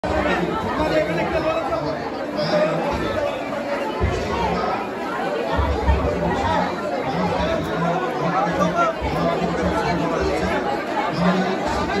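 A crowd's many overlapping voices chattering in a large, echoing hall, steady throughout, with music faintly underneath.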